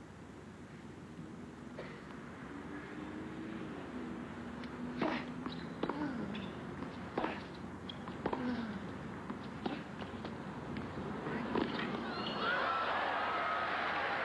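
Tennis rally on an outdoor hard court: about six sharp racket strikes on the ball, spaced one to two seconds apart, over a low crowd murmur. Near the end the crowd breaks into cheering and applause as the point ends.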